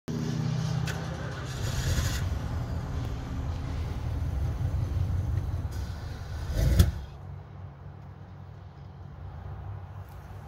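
1977 Chevy Camaro Z28's 350 V8 running at an uneven idle, with a short louder stretch about two seconds in and a sharp surge just before the seventh second. After the surge the level falls to a much quieter low hum.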